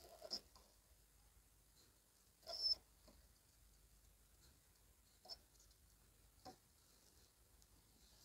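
Near silence broken by a few faint scrapes and taps of a soldering iron working on a circuit board, the loudest about two and a half seconds in.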